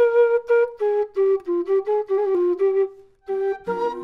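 Wooden end-blown flute playing a melody in short, separate notes that stay near one pitch with small steps up and down, with a brief break about three seconds in. Near the end, a fuller mix with more instruments comes in under it.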